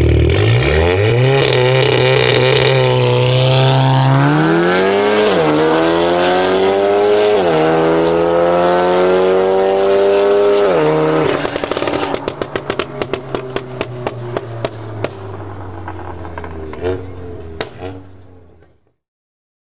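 Turbocharged BMW M135i with a custom iPE valved exhaust launching hard from a standing start beside a VW Golf R. Its engine revs climb through the gears, with the pitch dropping at three upshifts. From about 11 s in, rapid exhaust crackles and pops run on as the engine fades into the distance.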